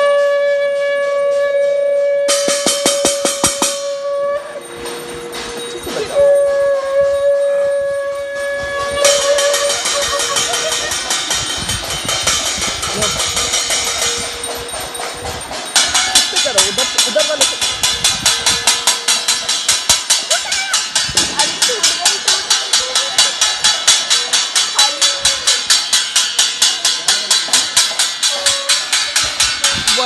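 A conch shell is blown in long, steady notes at the start and again around 6 to 9 seconds in. Steel plates are beaten with sticks and spoons in rapid metallic clanging, which settles about halfway through into an even beat of roughly three strikes a second.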